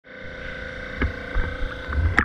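A steady machine hum with a held tone, over an uneven low water rumble, with a couple of short knocks about a second in.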